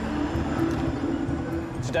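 Street traffic: a low rumble under a steady engine hum.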